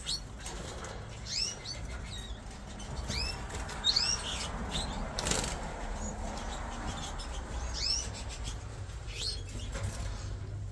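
Fife canaries in breeding cages giving short, rising chirp calls, one or two at a time, scattered through, over a steady low hum. A brief rustling rush of noise about five seconds in.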